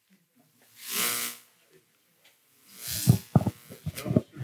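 A breathy rush of noise into a handheld microphone about a second in. Near the end comes another rush and a run of soft knocks from the microphone being handled.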